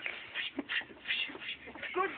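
A run of short, irregular hissy scuffs, about four a second.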